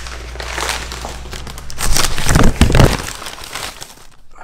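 Paper takeout bag and paper burger wrapper crinkling and rustling as the food is pulled out and unwrapped, loudest about halfway through.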